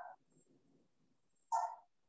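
Two short, sharp voice-like calls about a second and a half apart, the second louder, picked up over a video-call microphone.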